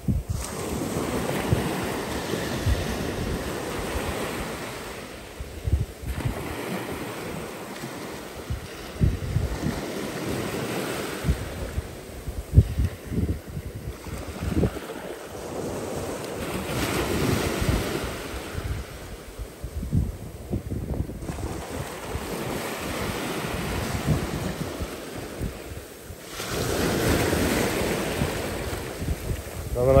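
Surf breaking and washing up the beach, swelling and ebbing in surges every few seconds, with wind buffeting the microphone.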